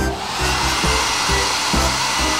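Handheld hair dryer blowing: a steady, even hiss that switches on suddenly, over background music with low bass notes.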